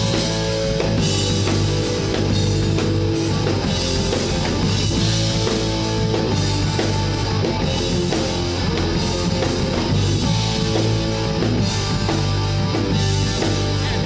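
Live rock band playing an instrumental passage: electric guitar, electric bass and a Tama drum kit keeping a steady beat, with no singing.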